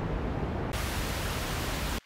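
Vinyl crackle and hiss sound-effect samples previewed one after another. About two-thirds of a second in, a brighter, hissier sample takes over, and it cuts off suddenly at the end.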